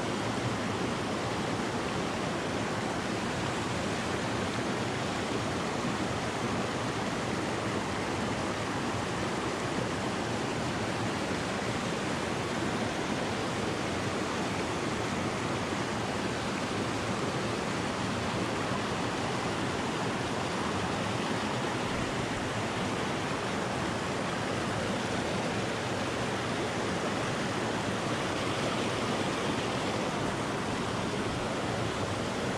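Steady rush of a rocky mountain stream, water running over stones and a small cascade, unbroken throughout.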